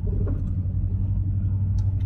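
A moving car's cabin: a steady low rumble of the engine and tyres on the road.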